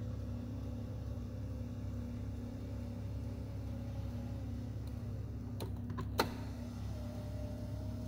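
2009 Dodge Grand Caravan driver's power seat motor running as its switch is held, a steady electric hum. About six seconds in there are a few sharp clicks, and then the motor runs again at a slightly higher pitch.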